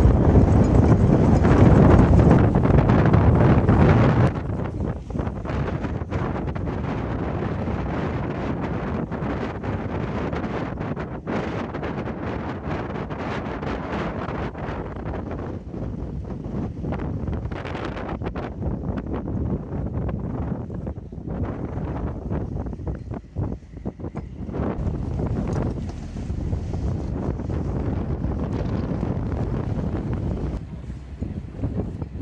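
Strong wind buffeting the phone's microphone. For about the first four seconds it is loud and rumbling, then it drops suddenly to a lighter, gusty wind noise with choppy water, aboard a small passenger ferry crossing a windy estuary.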